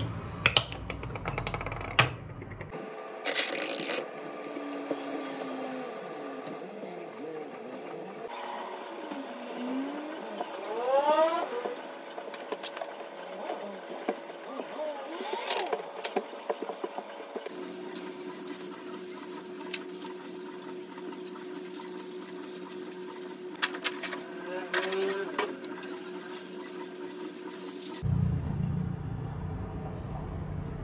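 Metal gas-hob burner caps clinking against the hob grates as they are lifted off and set down, in the first couple of seconds. After that comes a steady thinner background with held tones and a few rising gliding sounds whose source is unclear.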